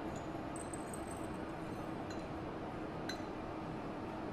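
Light clinks of porcelain teaware as dry tea leaves are tipped and scraped with a tea scoop out of a porcelain tea holder into the teapot: a cluster of faint high clinks about half a second to a second in, then single clinks near the middle and about three seconds in. A steady low hum runs underneath.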